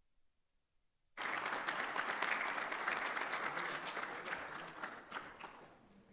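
Audience applause that breaks out suddenly about a second in, then thins and dies away near the end.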